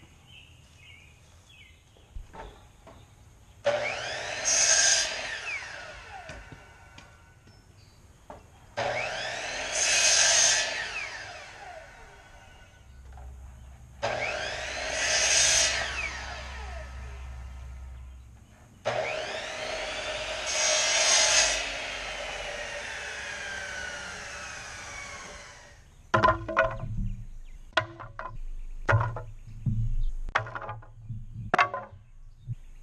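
Pressure-treated lumber being worked: four long grating passes of several seconds each, then a quick run of sharp wooden knocks near the end as boards clatter together.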